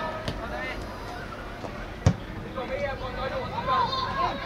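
A football struck by a kick, one sharp thud about two seconds in, over faint voices from the pitch and touchline.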